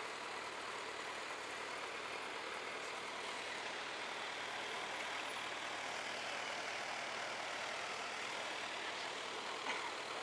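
Steady hum of road traffic, with cars idling and moving slowly. A brief sharp chirp comes near the end.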